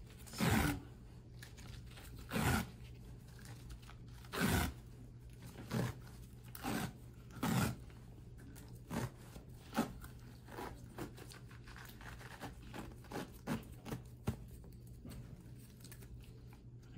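Self-adherent elastic compression bandage being pulled off its roll and wound around a leg, each pull peeling the sticky layers apart with a short crackling tear. The tears come every second or two at first, then smaller and more scattered.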